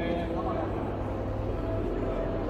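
Indistinct chatter of several people talking in a large hall, over a steady low hum, with faint held tones in the background.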